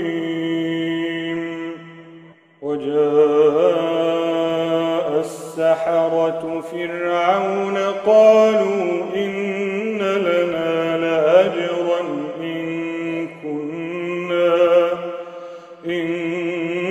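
A man reciting the Quran in the melodic, drawn-out tajweed style, holding long notes with ornamented turns in pitch. There is one short pause for breath about two seconds in.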